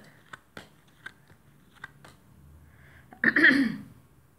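Tarot cards being handled, with a few light clicks and taps as cards are shuffled and laid on the table. About three seconds in comes a short, loud throat clear, the loudest sound.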